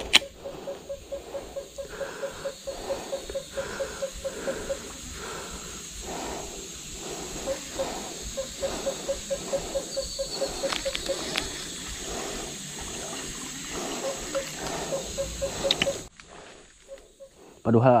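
Baitcasting reel being cranked to retrieve a cast lure: a fast ticking whir that pulses with each handle turn, about three turns a second, in spells with short pauses, stopping near the end.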